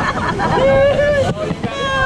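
Several riders laughing and squealing, with one held shout partway through, over the steady rush of water around a river-rapids raft.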